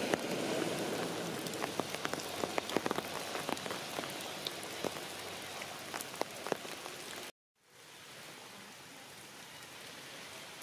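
Rain falling on forest leaves, with many separate drops ticking close by over a steady patter. A little past seven seconds in, the sound cuts out for a moment and comes back as a fainter, even patter.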